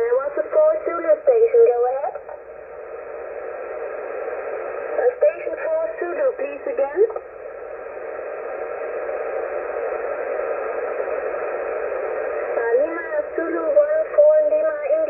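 Single-sideband voice on the 40-metre amateur band, received on a Yaesu FT-991A transceiver, with a narrow, thin sound. Short voice transmissions come at the start, again around five to seven seconds in, and near the end. Steady band hiss fills the gaps between them.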